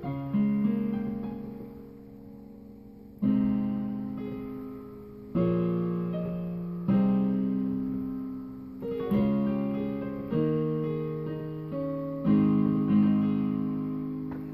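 Yamaha Portable Grand digital keyboard playing slow, sustained chords in A-flat: about seven chords struck one after another, each left to ring and fade before the next.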